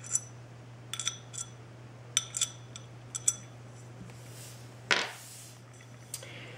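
Nickel-plated steel M5 hammer nut clinking inside the slot of an aluminium 20x20 slot-6 extrusion profile as it is worked in and along the groove: a series of light, ringing metallic clinks, then a louder knock with a brief brushing noise near the end.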